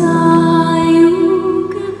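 Slow music with long held notes and a singing voice.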